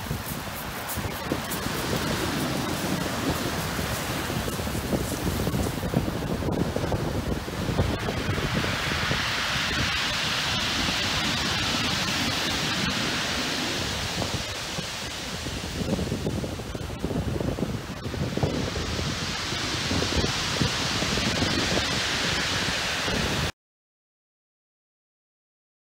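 Heavy beach-break surf crashing and washing up a shingle beach, with strong wind buffeting the microphone. The hiss of breaking water swells up twice, about eight seconds in and again near twenty seconds, then the sound cuts off abruptly near the end.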